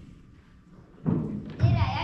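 Thuds on a wooden stage floor about a second in, then a child's voice calling out near the end, its pitch sliding down and back up, in a large hall.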